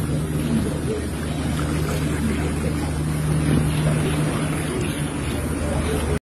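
A steady low machine-like hum under a continuous rushing noise, level throughout with no clear events.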